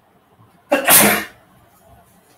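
A man sneezing once: a sudden loud burst about three-quarters of a second in, lasting about half a second.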